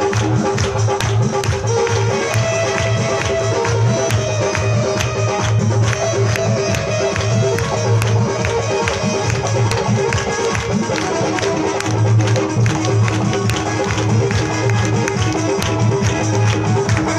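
Instrumental passage of live bhajan music: held melodic notes over a fast, steady percussion beat with a pulsing bass.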